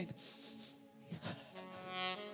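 Quiet background music: a soft, sustained chord with a bowed-string sound comes in about halfway through and is held steadily. A brief faint vocal sound comes just before it.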